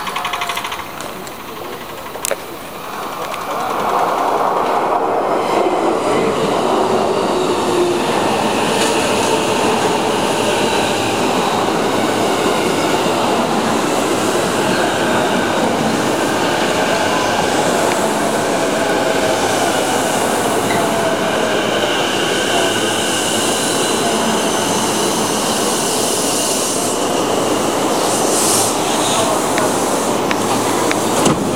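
Electric commuter train pulling into the platform. The rumble of wheels and carriages rises sharply about three to four seconds in and then holds steady, with a faint motor whine falling in pitch as the train slows to a stop.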